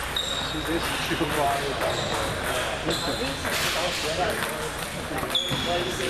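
Scattered clicks of table tennis balls striking paddles and tables, from rallies around the hall, with background voices.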